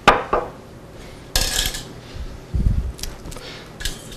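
Metal kitchen tongs and a sheet pan of vegetables being handled: a sharp knock at the start, a short scraping rustle about a second and a half in, a dull thump, then a few light clicks.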